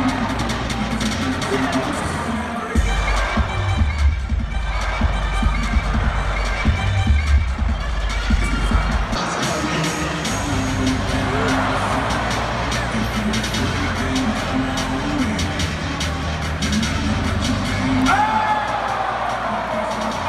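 Arena PA music playing over the steady noise and cheers of a large basketball crowd. A heavy bass line comes in about three seconds in and drops away about nine seconds in.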